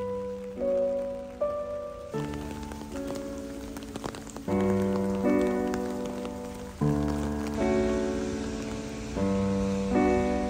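Rain falling steadily, a soft even patter heard most clearly in a quieter stretch a few seconds in, under gentle background music of slow chords, each struck and left to fade.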